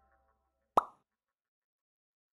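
A single short pop sound effect with a quick upward bend in pitch, about three-quarters of a second in, just after the last notes of a chiming outro jingle die away.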